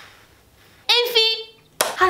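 A woman's short vocal exclamation, starting suddenly about a second in and held at one pitch for about half a second, with a sharp onset of her voice again near the end.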